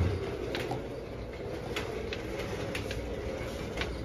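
Steady rumbling noise of moving along a shop aisle, with a low thump at the start and a few light clicks.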